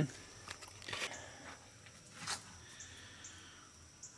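A quiet background with a few faint rustles and soft clicks, the clearest a single click a little after two seconds in.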